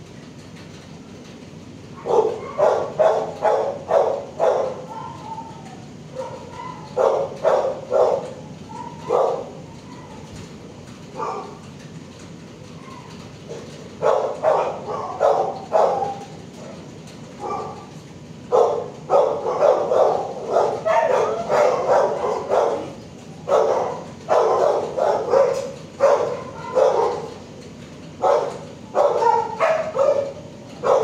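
Dogs barking in a shelter's kennels: runs of rapid, sharp barks with pauses of a few seconds between, starting about two seconds in and growing busier toward the end, over a steady low hum.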